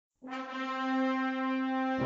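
Intro music opening with one held brass note that starts a fraction of a second in and stays at a steady pitch.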